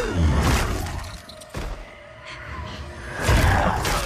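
Action-film soundtrack of music mixed with battle sound effects. A falling sweep opens it, it goes quieter through the middle, and a loud crash-like hit comes about three seconds in.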